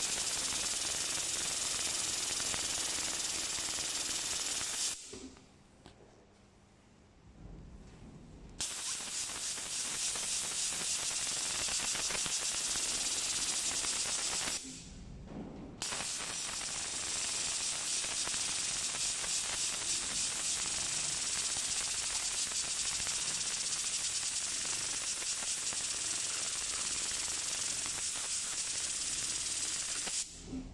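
Richpeace industrial tape binding sewing machine stitching binding tape onto the edge of a quilted pad, running steadily at high speed with a very fast, even needle rhythm. It stops abruptly twice, for about three and a half seconds about five seconds in and for about a second near the middle, then starts again.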